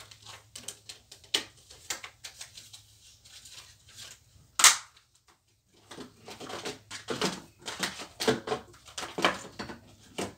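Small objects being handled and sorted in an open desk drawer: scattered clicks and light knocks, one sharp loud click about halfway through, then denser clattering and rustling near the end.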